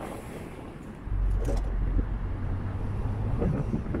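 Car driving: engine and road rumble with wind buffeting the microphone, growing louder about a second in.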